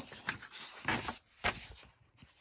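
A paper page of a picture book being turned, with two short rustles about a second in and again half a second later.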